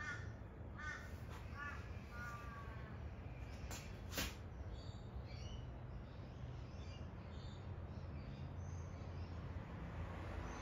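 A crow cawing about four times in quick succession, followed by faint high chirps from small birds. Two sharp clicks come about four seconds in, over a steady low hum.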